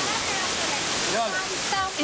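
Steady rush of flowing stream water, with a woman's voice starting about a second in.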